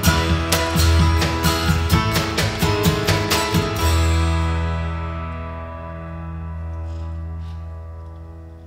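A live acoustic band of upright bass, grand piano, acoustic guitar and drums plays the closing bars of a song in a strummed rhythm. About four seconds in it stops on a final chord that rings on and slowly fades.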